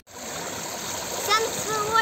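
Swimming-pool water splashing and lapping in a steady wash of noise, with a girl's voice starting just over a second in.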